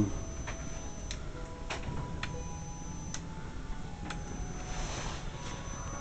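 Steady low electrical hum with a faint high whine from a running home-built high-frequency oscillator and coil rig, broken by about six irregular sharp ticks.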